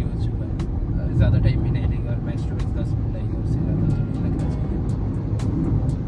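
Steady low road and tyre rumble inside the cabin of a moving Tata Tiago EV electric car, with a few faint clicks.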